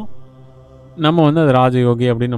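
A steady low background drone for about the first second, then a man's voice, intoned in a drawn-out, chant-like way, over the drone.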